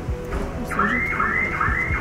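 An electronic alarm starts under a second in, sounding a repeating rising-and-falling tone about twice a second.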